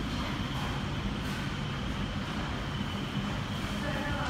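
Steady background din of a busy fast-food restaurant: an even indistinct noise with a low hum underneath and a faint high steady tone.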